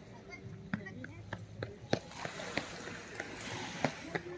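Faint outdoor ambience of distant voices of people strolling. Scattered light clicks and taps come through it.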